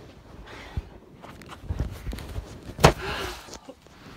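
Handling noise from a phone camera being carried and moved: low thuds and rustling, with one sharp knock about three seconds in.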